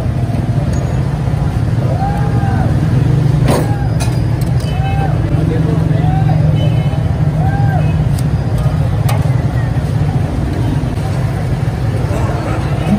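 Busy street-stall ambience: a steady low rumble throughout, with a few sharp clinks of metal spoons against china plates and faint voices in the background.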